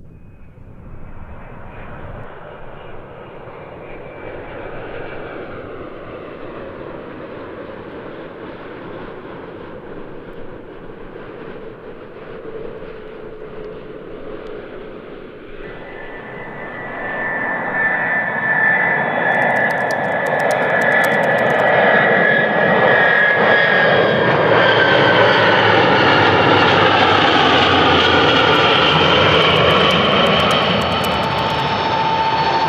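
Jet aircraft engines: a moderate, steady whine and rumble. About halfway through it gives way to a much louder jet sound, with a high whine that slowly falls in pitch.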